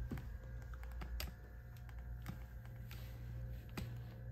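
Faint, scattered light clicks and handling noise over a low steady hum.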